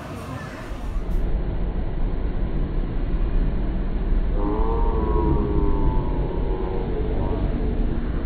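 Accelerator spinning-tub ride running with a steady, loud low rumble. From about halfway, a long held high note falls slightly in pitch for about three seconds.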